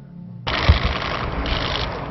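A sudden loud rushing noise with low rumbling thumps, starting about half a second in and running on steadily.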